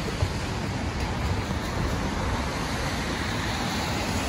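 Steady traffic and roadway noise, an even rushing hum with no distinct vehicle passing, and one brief tap about a quarter of a second in.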